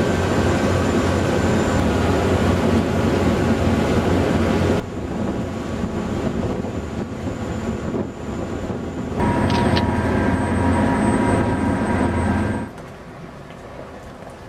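Riverboat engine running with a steady low rumble, broken off abruptly twice by cuts and dropping to a much quieter background near the end.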